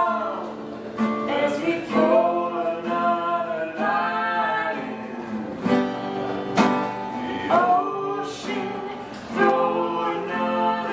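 A woman and a man singing a folk song together, with a strummed guitar accompanying them.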